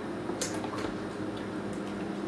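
Foil lid being peeled slowly off a plastic yogurt cup: a short crinkle about half a second in and a few fainter ticks, over a steady low hum.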